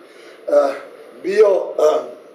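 Only speech: a man talking in two short stretches, with brief pauses between them.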